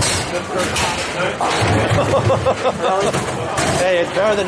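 A bowling ball crashes into tenpins near the start, a short clatter of pins, followed by voices in a bowling alley.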